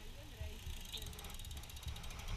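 Bicycle freewheel ticking rapidly as a wheel turns without pedalling, under faint voices.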